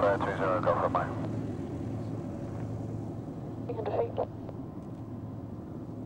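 Steady low drone of aircraft engines running, with short bursts of a voice over it at the start and again about four seconds in.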